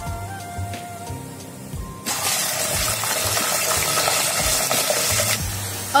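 Raw chicken pieces dropped into hot oil and whole spices in a steel pot: a sizzle starts suddenly about two seconds in and eases off near the end.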